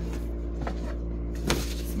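A small cardboard product box being opened by hand and the remote controller taken out: a light knock, then a sharper knock about one and a half seconds in, over a steady low hum.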